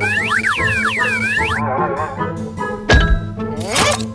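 Cartoon sound effects over background music: a run of springy boings for the first second and a half, a short wobbly tone, a single thump about three seconds in, and a quick rising sweep near the end.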